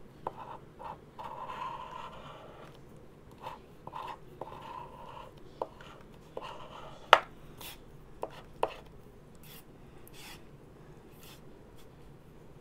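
The plastic edge of a fidget spinner is scraping the scratch-off coating from a lottery ticket in short, repeated strokes. A few sharp clicks follow, the loudest about seven seconds in.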